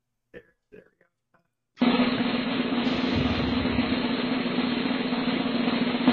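Drum roll sound effect played from a podcast soundboard: a steady snare drum roll that starts abruptly about two seconds in, setting up the announcement of a name.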